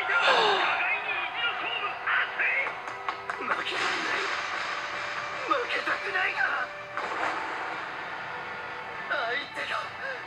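Anime episode soundtrack: characters' lines in Japanese in several short stretches over steady background music.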